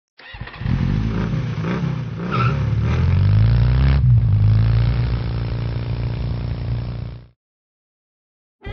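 Motorcycle engine revving up and down a few times, then running at a steady pitch before cutting off suddenly about seven seconds in.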